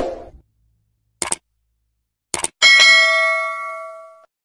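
Subscribe-button animation sound effects: a short hit at the start, two quick mouse-click sounds about a second apart, then a notification bell chime, the loudest sound, ringing with several tones and fading away over more than a second.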